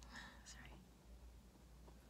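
A brief, very soft whisper within the first second, then near silence over a faint steady low hum.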